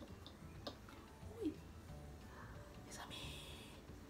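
Quiet room tone with a woman's soft, hushed voice: a brief low vocal sound about a second and a half in, and a whispered "mes amis" near the end.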